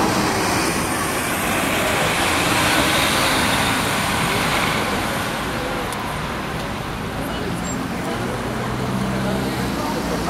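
NJ Transit NABI 40-SFW city bus pulling away from a stop and accelerating up the street, its engine noise mixed with steady street traffic. It is loudest a few seconds in and eases off as the bus moves away.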